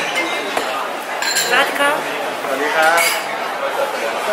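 Restaurant dining-room hubbub: indistinct chatter of other diners, with a few clinks of cutlery and dishes.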